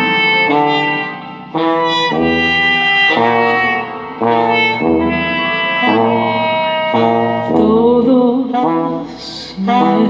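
Live brass and wind ensemble of trumpets and saxophone playing a phrased tune, over a low bass note that sounds about once a second.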